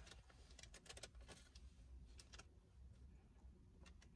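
Near silence: faint, scattered mouth clicks of someone chewing a bite of doughnut, over a low steady hum.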